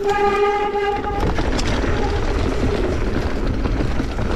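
Mountain bike disc brakes squealing with a pitched howl for about a second. After that comes the steady rumble and rattle of the bike rolling down a rough dirt trail, with wind on the microphone.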